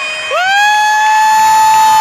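A long, high-pitched shrill cheer from a single audience member, sliding up at the start and then held on one steady note, over crowd cheering.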